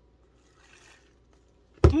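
Faint sip through a plastic straw from a cup of frozen Coke, then a loud, sudden "mmm" of enjoyment near the end.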